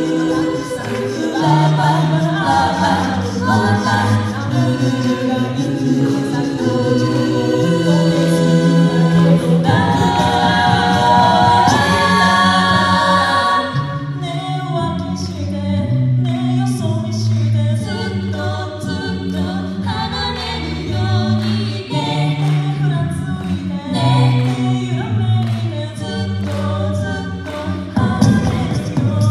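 Live a cappella group singing a Japanese pop song in several parts: a sung bass line, chord harmonies and a lead, with vocal percussion keeping the beat. About halfway, a rising, fuller build gives way to a sparser section where the beat stands out more.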